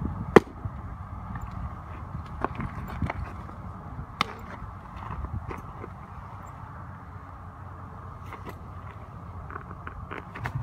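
A pitched baseball, a curveball, smacking into a catcher's mitt once, sharp and loud, about half a second in. A few fainter knocks follow over the next few seconds over a steady low rumble.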